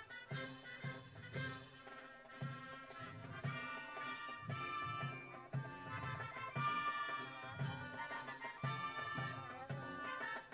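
Police brass marching band playing a march as it parades: a brass melody with sousaphones over a steady bass-drum beat.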